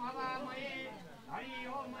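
A voice chanting Hindu wedding mantras in a drawn-out, wavering sing-song, with a short pause just past halfway.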